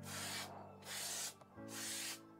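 Aerosol spray-paint can hissing in three short bursts of about half a second each, as the nozzle is pressed and released between passes of a light coat.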